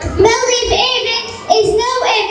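A young girl's voice in a chant-like, sung delivery, in phrases with a short break about one and a half seconds in.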